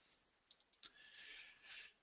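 Near silence with two faint computer mouse clicks about three quarters of a second in, as a slide is advanced.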